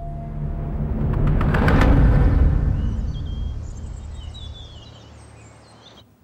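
A deep rumble swells to its loudest about two seconds in, then slowly fades away. Faint bird chirps sound over the second half, and everything cuts off sharply at the end.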